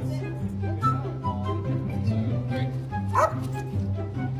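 Background music with a small dog yipping over it, the loudest yip about three seconds in.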